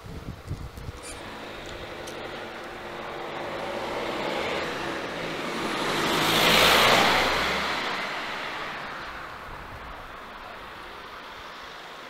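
A white SUV driving past on a street: its engine and tyre noise builds over several seconds, is loudest about seven seconds in, then fades away.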